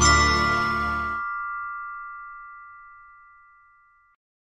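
A single bell-like ding struck over the final chord of the title music. The chord cuts off about a second in, and the ding's ringing fades slowly over the next few seconds.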